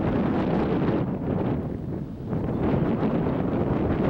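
Wind buffeting the camera microphone: a steady rumbling noise with a short lull about two seconds in.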